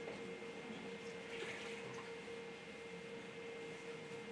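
Quiet room tone with a steady hum, and faint liquid sounds of lemon juice being poured into a blender jar.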